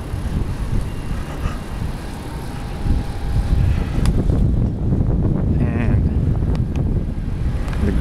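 Low, steady rumbling wind noise buffeting the microphone of a camera carried on a moving bicycle, with a few faint clicks.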